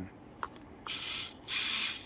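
Large RC servo driving its arm to a new position, two short bursts of buzzing gear-motor whine about a second in and again just after.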